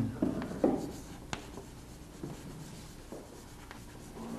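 Chalk writing on a blackboard: faint, irregular taps and scratches of the strokes, with one sharper tap a little over a second in.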